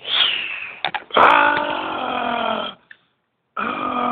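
A person voicing a toy dragon's growl: a short falling screech at the start, then a long, deep, throaty growl from about a second in that lasts about a second and a half. A second growl begins near the end.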